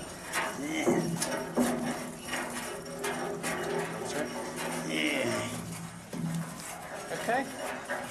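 Knocks and scuffs of people moving about inside an empty Lancashire boiler, with a steady low hum and some murmured voice sounds.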